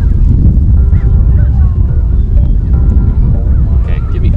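Steady low wind rumble on the microphone, with faint, short honking calls like geese above it.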